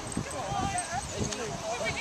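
Indistinct chatter of several people's voices overlapping in the background.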